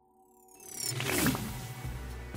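Logo intro sting: a short musical jingle with a clock-like mechanical ratcheting effect. It opens quietly with a few high descending glides and swells about half a second in.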